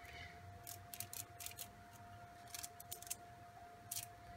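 Faint, irregular soft ticks of a paintbrush being tapped to splatter white paint, over a faint steady tone.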